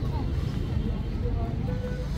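Outdoor ambience: faint, distant voices of people over a steady low rumble.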